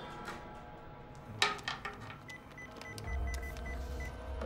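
A phone giving a quick run of about seven short beeps at one pitch, as a number is dialled, after a single sharp click. A low bass note of music comes in near the end.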